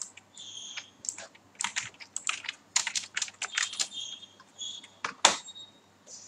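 Computer keyboard keys tapping in an irregular run of short clicks, with one louder click a little after five seconds in.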